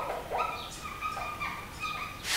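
Marker pen squeaking on a whiteboard as words are written: a run of about four short squeaks, one per stroke.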